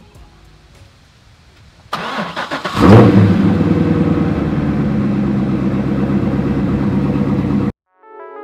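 C6 Corvette Z06's 7.0-litre LS7 V8 being started: the starter cranks for about a second, the engine catches with a loud rev flare, then settles into a steady idle. The sound cuts off abruptly just before the end.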